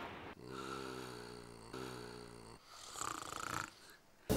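A man snoring: a long pitched snore of about two seconds, then a shorter breathy exhale.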